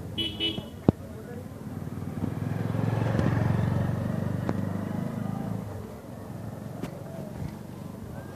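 A motorcycle passes close by, its engine growing louder to a peak about three seconds in and fading by about six seconds. A brief horn toot sounds near the start, followed by a sharp click.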